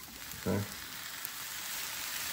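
Fried rice sizzling in a hot skillet as soy sauce is poured onto it, the sizzle a steady hiss that grows a little louder.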